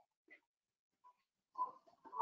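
Near silence, broken by a few faint, brief noises.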